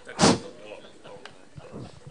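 A short, loud burst of rushing noise through the lectern microphone about a quarter second in, as the microphone is handled at the lectern, followed by faint murmur in the hall.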